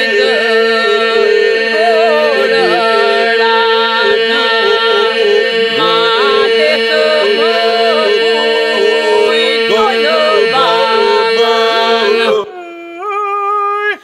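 Albanian Lab iso-polyphonic singing: a group holds a steady drone (the iso) under lead and breaker voices that wind and ornament the melody. About twelve seconds in, the drone drops away and a lone voice holds a note that slides upward, breaking off at the end.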